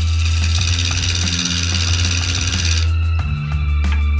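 Background music with a steady beat, over which a turning tool cuts into oak spinning on a wood lathe, a hiss of cutting that stops abruptly about three seconds in.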